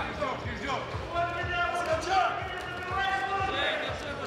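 Voices calling out in a large hall, with a long held shout from about a second in, over background music with a steady low beat.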